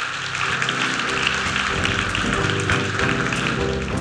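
Audience applauding, with instrumental music coming in underneath at the start.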